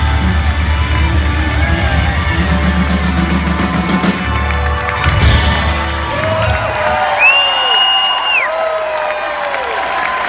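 A live rock band ringing out the final chord of a song, bass and electric guitar held, over a cheering crowd. The band stops about seven seconds in, leaving audience cheering and whoops with one long whistle.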